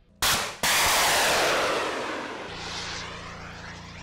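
Explosion of an anti-tank round on a live-fire range: two sharp blasts close together, then a long rolling echo that fades over about three seconds.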